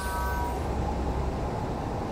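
Steady rushing noise with a deep rumble under it that drops away about one and a half seconds in: a blizzard blast sound effect.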